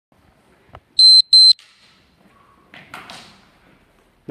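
An electronic beeper gives two short, high, steady beeps in quick succession about a second in, each lasting about a quarter second. A single sharp knock comes just before them.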